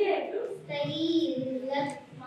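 A young girl's voice through a handheld microphone, speaking in slow, drawn-out syllables with one long held vowel in the middle.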